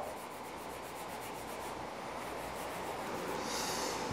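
Faint, steady rubbing of fingers rolling a piece of modelling clay back and forth on a tabletop.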